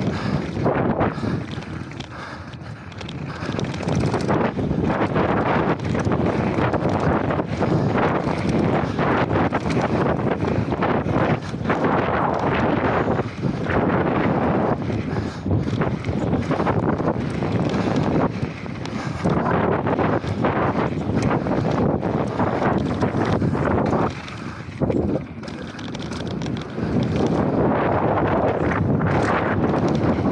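Wind rushing over an action camera's microphone at riding speed, mixed with knobby mountain-bike tyres rolling over dusty dirt and loose stones and the bike knocking and rattling over bumps. The noise is steady and loud apart from two brief lulls.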